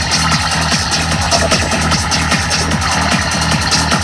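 Dark psytrance played loud and continuous, with a fast, repeating bass and kick pattern driving under a dense layer of electronic sounds.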